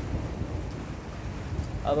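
Thunderstorm noise: a steady low rumble of thunder over an even hiss of rain.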